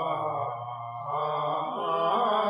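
Group of men chanting a Sindhi molood (devotional madah), voices sustaining a low held note under the melody. The sound thins briefly about halfway through before the voices swell back in.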